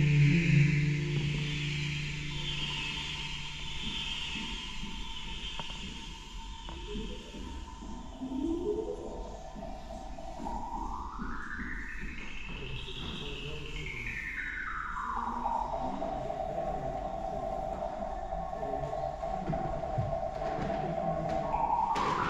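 Ambient electronic soundscape. A low held drone fades over the first few seconds. Later a gliding tone sweeps up high and back down over about five seconds, then settles into a long held note that begins to rise again near the end, with whale-like sliding pitches.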